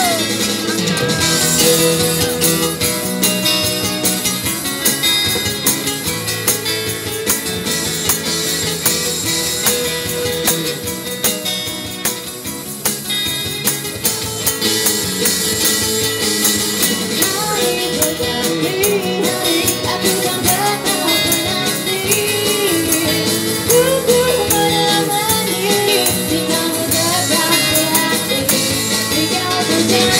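Live busker band playing a Malay pop song: steel-string acoustic guitars strumming with a tambourine shaken on the beat, amplified through a small street PA. A female singer comes in over the guitars about halfway through.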